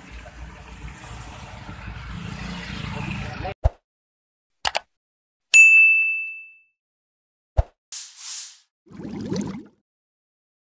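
Outdoor background noise at a night-time building fire, with faint voices, cutting off abruptly about three and a half seconds in. Then a subscribe-button animation's sound effects: a few sharp clicks, one bright bell-like notification ding that rings out for about a second and is the loudest sound, and two short whooshes near the end.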